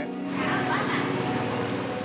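Background music with steady held low notes, over an even wash of street noise.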